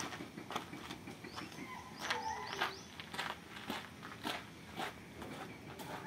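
Footsteps on a dirt floor, irregular soft steps about every half second, with a few short bird chirps in the background.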